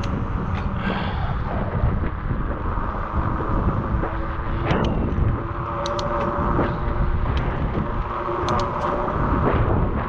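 Wind rushing over the microphone of a camera on a moving bicycle, a heavy low rumble, with car traffic going by on the road alongside. A few light clicks come in the second half.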